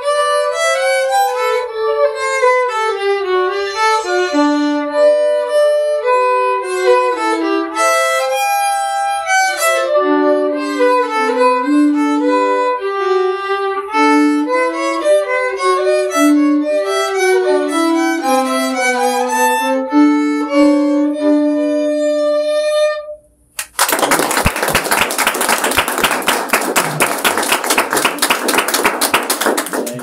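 Two violins playing a bourrée duet, the two parts moving together, until the piece ends about 23 seconds in. A short pause follows, then applause of many clapping hands.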